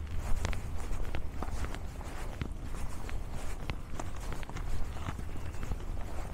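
Footsteps crunching on an icy, snow-packed trail at a steady walking pace, about two steps a second.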